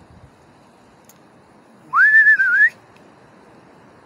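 A person whistles one short note, about two seconds in: it slides up, wavers, and lifts again just before it stops.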